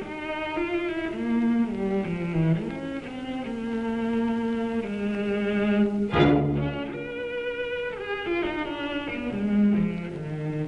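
Cello music: slow, sustained bowed notes, sometimes two or more sounding together, shifting in pitch. About six seconds in, a brief loud burst of noise swells up and dies away.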